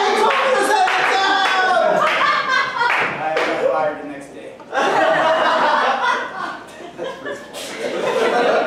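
Audience laughing and applauding, dipping briefly about halfway through and then picking up again.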